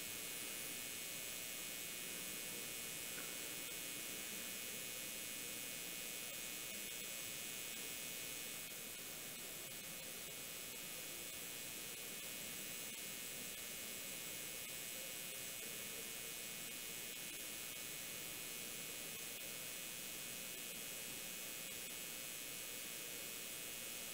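Steady faint hiss with a light hum and no distinct events: a recording's background noise floor.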